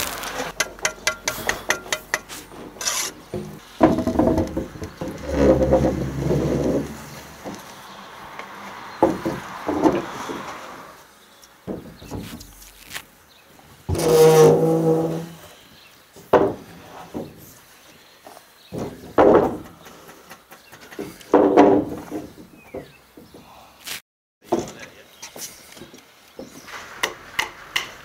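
Carpentry work on softwood floor joists: scattered knocks and thumps of timber being handled and set in place, with footsteps on scaffold boards, then a run of quick hammer taps near the end.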